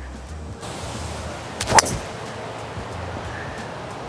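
A single sharp crack of a golf driver striking the ball off the tee, about a second and a half in, over steady wind noise on the microphone.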